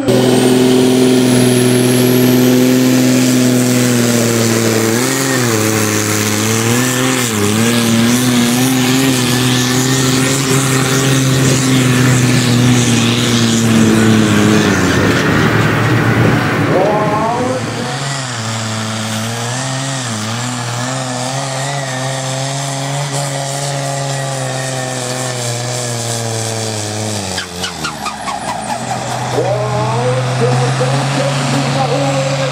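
Diesel pulling tractor's engine running at full load as it drags the weight sled, a loud steady note that wavers several times, with a rising whistle in the first couple of seconds. The note drops away near the end as the engine winds down at the end of the pull.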